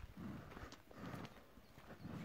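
Faint steps on soft, stony earth: dull thuds about twice a second, with a few light clicks of small stones.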